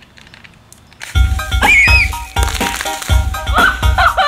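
Near quiet for about a second, then loud background music with a heavy bass beat and sliding high tones starts suddenly and carries on.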